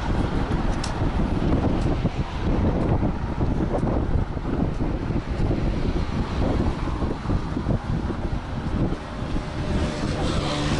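Wind buffeting the action camera's microphone: an uneven low rumble that keeps rising and falling.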